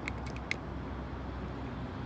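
Low steady outdoor rumble, with a few faint clicks in the first half second.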